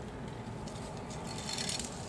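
Small toy car's wheels rolling over cardboard and a tiled floor: a light rattling scrape that grows louder about one and a half seconds in.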